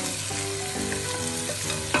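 Tomato stew sizzling steadily in a pot as chopped carrot, onion and green bell pepper are scraped into it from a plate with a spatula, with one sharp knock near the end.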